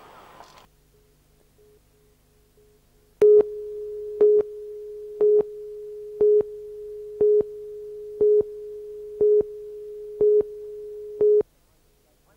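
Broadcast line-up tone under a station ident slate. A steady mid-pitched tone, faint at first and then loud from about three seconds in, with a short louder beep once a second, nine beeps in all. It cuts off suddenly near the end.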